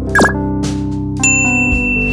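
End-card background music with two sound effects: a short falling swoosh about a fifth of a second in, then a bright ding about a second and a quarter in that rings on, the notification-bell chime of a subscribe animation.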